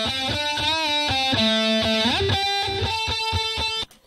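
Recorded electric guitar playing a single-note melodic line with a bent note and a slide up midway, cut off abruptly near the end. It is double-tracked left and right, and a pasted copy has made both sides identical, so the part collapses to mono instead of sounding wide stereo.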